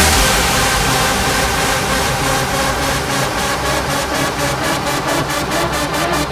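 Big room house track in a build-up: the kick and bass drop out and a rising white-noise sweep takes over, with a drum roll growing louder toward the end.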